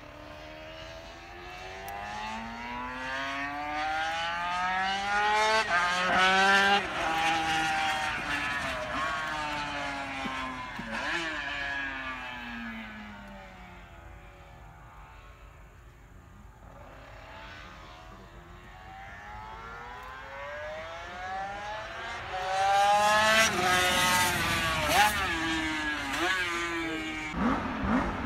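A racing motorcycle engine passes at high revs twice. Each time the sound swells and the pitch climbs as the bike approaches, then drops and fades as it goes away. The first pass is loudest about six seconds in, the second near the end.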